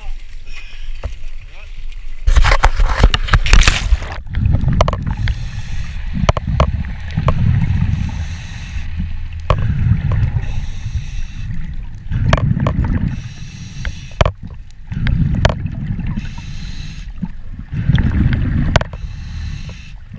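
A loud splash as a scuba diver enters the sea, then the diver breathing through a regulator underwater: a hiss on each inhalation alternating with a rumble of exhaled bubbles, about every three seconds.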